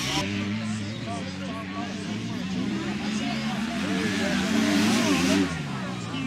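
Dirt bike engines running as motocross bikes race on the track, growing louder to a peak about five seconds in and then dropping off suddenly, with voices over them.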